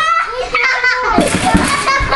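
Young children's voices calling out and squealing without clear words while they play. In the second half comes a harsh, noisy burst with a sharp thump in it.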